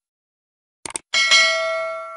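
Subscribe-button animation sound effect: a quick double mouse click just before a second in, then a bell ding that rings on with several pure tones and fades away.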